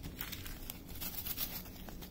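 Thin plastic crinkling as it is handled: a quick run of small crackles.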